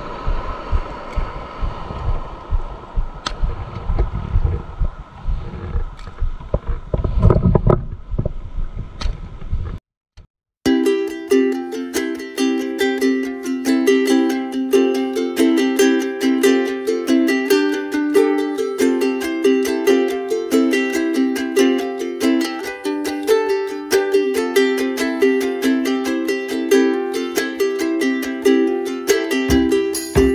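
Wind buffeting the microphone, with water and handling noise, for about ten seconds. It cuts out abruptly, and after a brief silence background music of plucked strings with a quick repeating pattern of notes takes over.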